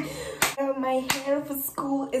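A young woman's voice, broken by two sharp hand claps about two-thirds of a second apart in the first half.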